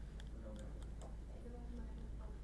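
Four or five quick, light clicks in the first second, typical of a computer mouse stepping through moves on an analysis board.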